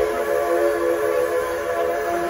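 Steam locomotive whistle blowing one long, steady blast, several notes sounding together as a chord.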